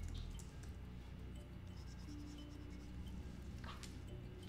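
Faint background music with sustained low notes, under the scratch of a pen stylus on a drawing tablet, with one longer scratchy stroke near the end.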